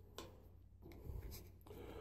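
Faint handling noise: a few light clicks and a short scrape as a plastic mounting plate and a rotary switch are moved about by hand.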